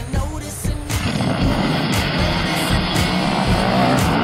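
A pack of motocross bikes revving hard and pulling away from the start line together. The engine noise comes in suddenly about a second in and stays loud, over a pop song with singing.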